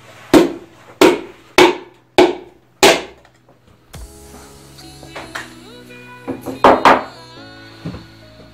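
Five sharp taps about half a second apart from the end of a hammer handle, driving a ringed piston through a tapered ring compressor into a cylinder bore of a Honda D16Z6 block. After that, background music with a melody takes over.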